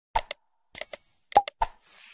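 Sound effects of an animated like-and-subscribe graphic: a double mouse click, a short bright bell ding just under a second in, then a few more clicks, and a whoosh starting near the end.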